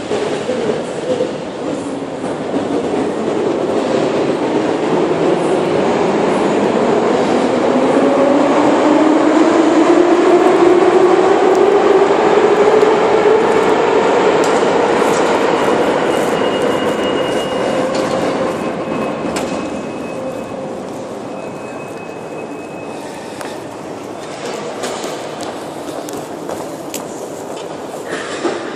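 Metro train starting off, its electric traction motors whining and rising steadily in pitch over about eight seconds under a rumble of wheels. The sound swells to its loudest about halfway through, then fades away.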